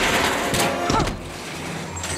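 Film soundtrack: a man crying out "Aah!" over a loud burst of noise that dies down about a second in.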